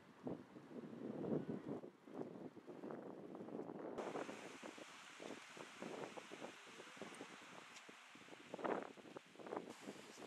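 Wind gusting against the microphone in irregular low rumbles. From about four seconds in, a steady hiss of sea waves joins it.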